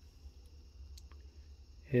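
Quiet bench room tone with a faint steady hum and a single small click about a second in, from handling a carburetor slide and metering needle.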